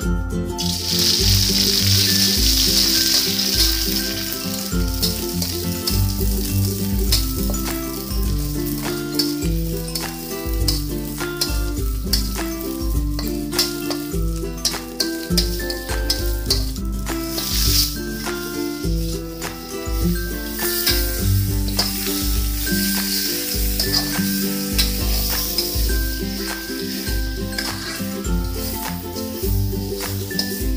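Spicy yellow curry paste frying in hot vegetable oil in a metal wok, sizzling loudly from the moment it goes in, and stirred with a metal spatula.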